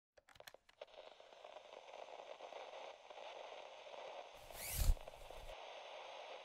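Intro sound effects for an animated logo: a few sharp clicks, then a faint crackling hiss, and a whoosh that ends in a low thump a little before five seconds in.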